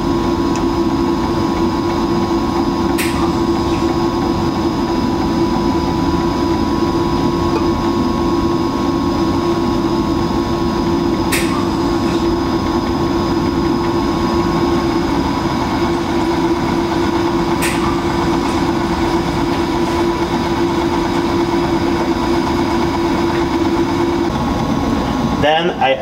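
Overhead laboratory stirrer motor running at a steady speed while slurry is mixed into latex binder during the letdown stage of making latex paint. A few faint clicks sound over it.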